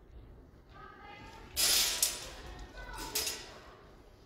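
A sparring exchange with steel langes messers. A loud burst of noise about one and a half seconds in ends in a sharp blade contact, and a second contact follows about a second later.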